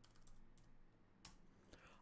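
Faint computer keyboard typing: a few soft keystrokes, with one sharper click a little past the middle.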